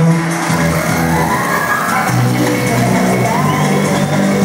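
Live trip-hop band music heard from the audience in a concert hall, with steady held deep bass notes under gliding vocal and synthesizer lines.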